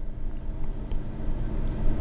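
A steady low rumble with a faint hum, in a pause between spoken phrases.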